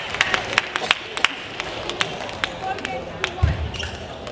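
Irregular sharp clicks of table tennis balls striking tables and bats in a large hall, over a murmur of voices. There is a low thud about three and a half seconds in.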